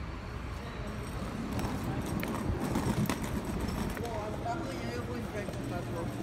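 Airport terminal background noise: a steady hum with a murmur of distant voices and scattered light knocks.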